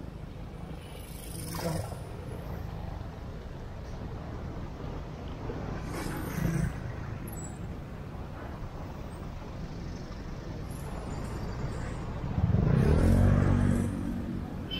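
Steady traffic noise on a busy city road, heard while riding a bicycle alongside it. Near the end, a motor vehicle's engine passes close and runs loud for about a second and a half.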